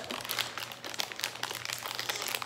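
Plastic snack wrapper crinkling and crackling in a run of quick, irregular crackles as hands work at tearing it open, without yet getting it to tear.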